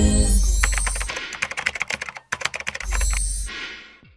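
A TV news outro sting over the end card: an opening hit with a deep bass note, a rapid run of dense clicks like fast typing, broken by one short gap, then a second deep bass hit that fades out near the end.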